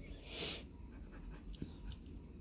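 A brush-tip ink pen drawing across paper, with one louder stroke about half a second in and fainter pen sounds after it.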